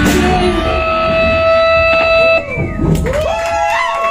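A live rock band ends a song: the electric guitar's final held note rings out over the band and is cut off sharply about two and a half seconds in. The audience then starts cheering and whooping.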